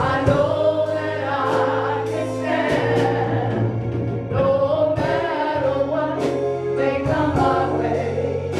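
Live gospel worship song: a man singing over an electronic keyboard holding low sustained bass notes, with a drum kit adding cymbal and drum hits.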